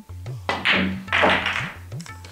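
Two loud thunks about half a second apart, typical of pool balls dropping into a pocket: the object ball and then the cue ball following it in, a centre-ball shot scratching. Tabla and sitar background music plays underneath.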